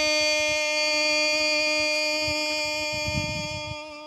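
A woman's long held note in Hmong kwv txhiaj sung poetry, sustained on one steady pitch without a break and fading away near the end.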